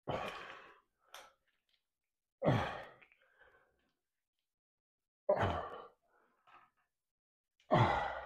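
A man exhaling hard in short breaths under exertion, four of them about two and a half seconds apart, in time with pushing a resistance-band bar out from his chest.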